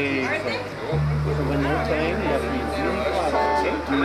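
Electric bass amp sounding long, held low notes between songs, the note changing about a second in, under the chatter of several voices.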